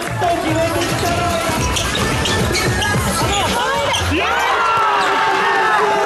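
A basketball being dribbled on a hard court, with a run of bounces that thins out after about four seconds, under music and a voice.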